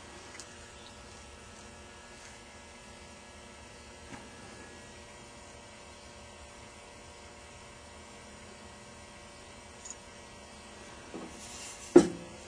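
Low steady electrical hum over faint room noise, with a few faint ticks. A short sharp knock comes at the very end.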